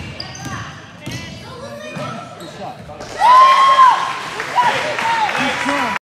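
Basketball shoes squeaking on a hardwood gym floor amid scattered voices, then, about three seconds in, a sudden loud burst of spectators cheering and shouting, led by one long high yell, that carries on to the end.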